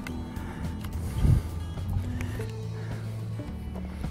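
Background music with held low notes that change every second or so, and a single low thump a little over a second in.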